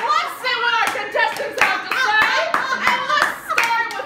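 Several sharp hand claps at uneven intervals over high-pitched voices talking.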